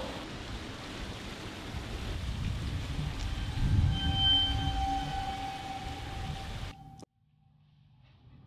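Street ambience: a low rumble of passing traffic that swells about four seconds in, with a steady high tone over it. It cuts off abruptly about seven seconds in to faint, quiet room tone.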